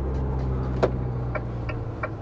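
Fiat Ducato Serie 8's 2.2-litre Multijet diesel engine running steadily at low revs, heard from inside the cab as a low hum, with a few light clicks in the second half.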